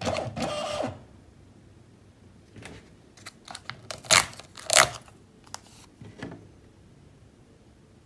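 Rollo thermal label printer feeding out a label with a brief mechanical buzz, then a string of sharp clicks and snaps as the label is torn off by hand, the loudest two around four and five seconds in.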